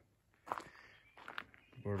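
A few footsteps on gravel and dirt ground, each a short, sharp scuff, about half a second and about one and a half seconds in. A man's voice starts just at the end.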